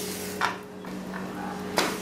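A spatula knocking and scraping against a nonstick frying pan as a pancake is flipped: three sharp knocks, the loudest near the end, over a low frying hiss.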